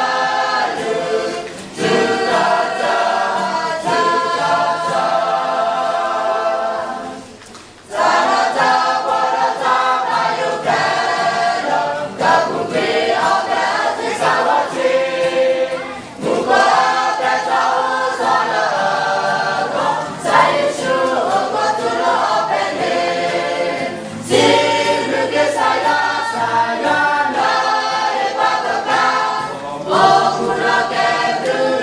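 A choir singing in long phrases, with a short pause between phrases about eight seconds in.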